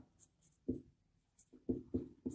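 Marker pen writing on a whiteboard: a few faint, short strokes, with a couple of brief low sounds about two thirds of a second in and near the end.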